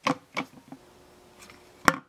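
A few light clicks and knocks, the loudest near the end: the hard PVC pipe of the trap being handled on its bent paper-clip mounts on a wooden board.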